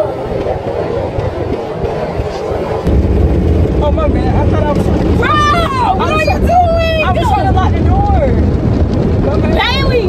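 Automatic car wash water spray beating on the car, heard from inside the cabin as a steady rush that gets louder and deeper about three seconds in. Over it, a woman's high-pitched cries rise and fall through the second half.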